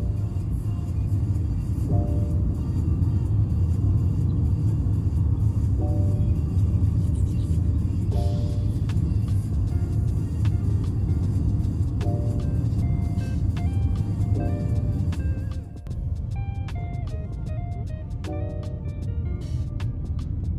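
Steady low rumble of a car's road and engine noise inside the cabin, with light background music of short melodic notes over it. The rumble dips for a moment about three-quarters of the way through.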